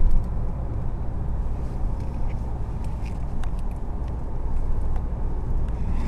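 Road noise inside a moving car's cabin: a steady low rumble of engine and tyres on the road, with a few faint ticks.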